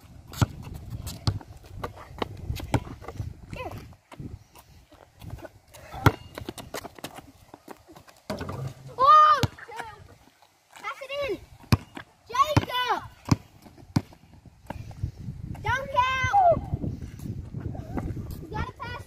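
Children's high-pitched voices calling out about four times in the second half, each call drawn out for about a second, with sharp thuds of a basketball bouncing on an outdoor court between them.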